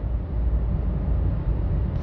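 A steady low rumble that carries on unchanged through a pause in speech, with a faint even hiss above it.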